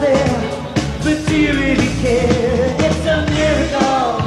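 Live pop band playing, with a voice singing over drums and a steady beat.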